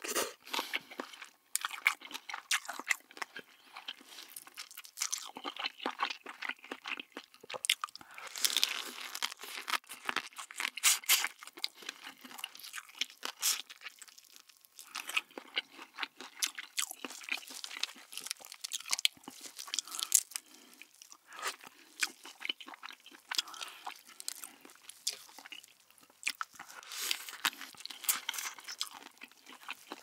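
Close-miked eating sounds: crab in its shell being bitten, crunched and chewed, with many irregular crackles and clicks.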